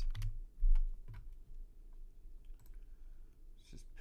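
Computer keyboard typing: a few scattered key clicks at an uneven pace, with a dull low thump under a second in.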